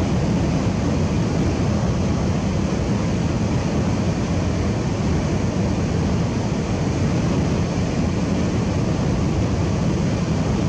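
Minivan driving at highway speed: steady road and wind noise, a low rumble with a hiss over it.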